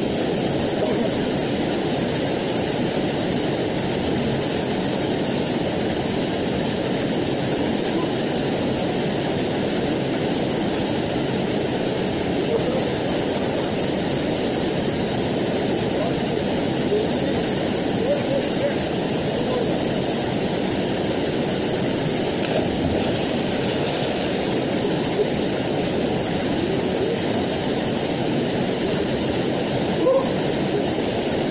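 Small waterfall on a mountain stream pouring into a rock pool: a steady rushing of water.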